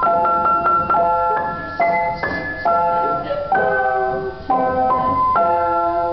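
Upright piano played in simple block chords carrying a children's-song melody, a new chord struck every half second to second, each ringing and fading before the next.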